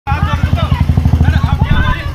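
A motorcycle engine idling close by with a fast, even low throb, with people's voices talking over it.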